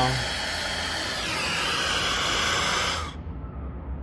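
Handheld blowtorch flame hissing steadily while it heats and solders the pinched-off end of a copper refrigerant line shut. The hiss cuts off suddenly about three seconds in as the torch is shut off.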